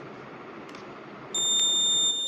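A piezo buzzer sounds one steady, high-pitched beep, starting about two-thirds of the way in, over a faint steady hiss.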